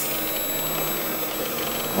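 Steady background noise with a faint hum and thin steady tones, unbroken and even: the room tone of the recording.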